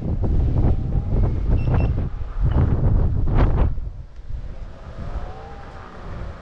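Wind buffeting the microphone of a camera riding on a moving electric unicycle, heavy and rumbling, easing off to a quieter rush about four seconds in.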